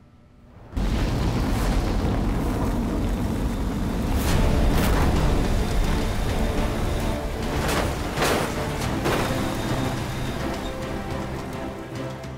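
A drone missile strike exploding: a sudden loud blast about a second in, then a continuing rumble with several further booms, the heaviest in the middle of the stretch and easing towards the end. A dramatic film score plays under it.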